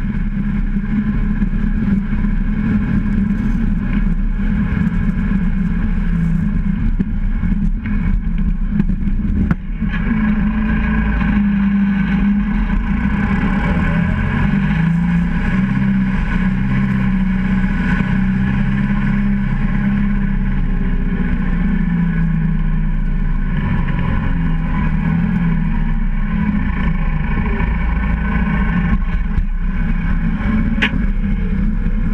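Valtra N101 tractor's diesel engine running steadily under way while plowing snow. Its pitch rises and falls through the middle as the engine speed changes.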